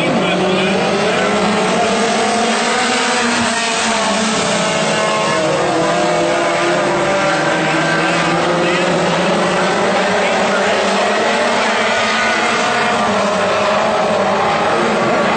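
Several WISSOTA Mod Four race cars' four-cylinder engines running hard on a dirt oval, a dense pack of engine notes rising and falling in pitch as they go round.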